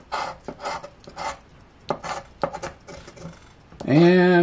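The edge of a large scratcher coin scraping the coating off a paper scratch-off lottery ticket, in short, uneven strokes about two a second.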